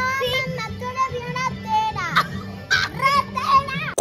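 A child's high voice, with held and sliding pitches, over background music.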